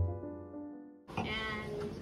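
Piano music, a chord ringing and dying away. About halfway through it cuts to the chatter of a crowded room, with a short high wavering vocal sound.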